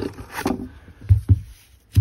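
Handling noise on a tabletop: a light click, then two dull low thumps a moment apart just after a second in, and a sharp click at the end.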